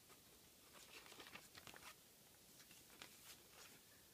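Near silence, with faint rustles and soft ticks of paper journal pages being turned by hand, in two short clusters.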